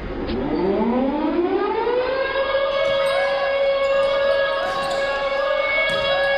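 A siren winding up: its pitch rises over about two seconds, then it holds one steady tone.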